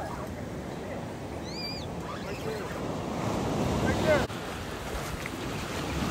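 Surf washing on the beach with wind buffeting the microphone, under faint distant voices. A brief high-pitched chirp sounds about a second and a half in.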